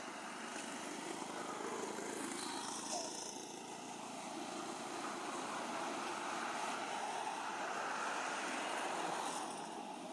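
Steady distant engine noise, a low rumble without distinct beats, swelling gradually after the middle and easing off near the end.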